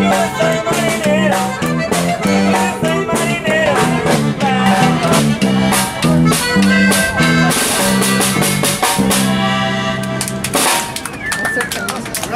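A live Mexican band playing on a beach, with drums, a bouncing two-note bass line and a melody over it. The song ends about ten and a half seconds in, and voices and clapping follow.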